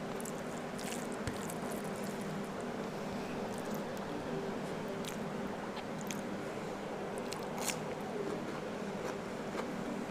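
Close-miked eating by hand: chewing with wet mouth clicks and fingers squishing rice and snail curry, with scattered short clicks, the sharpest a little before the end. A steady low hum runs underneath.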